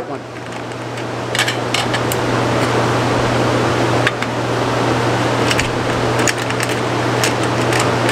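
Steady fan-like noise with a low hum, building a little over the first seconds. Over it, a few light clicks and scrapes as a wire and screwdriver are worked into a terminal inside a metal quick-disconnect box.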